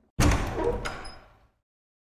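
Heavy wooden double door sound effect: one sudden loud door impact that dies away over about a second and a half, with a short click partway through.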